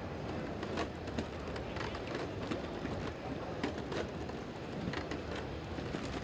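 Busy crowd hubbub of an exhibition hall, with scattered irregular light knocks and thuds from a person boxing a Unitree G1 humanoid robot in a ring.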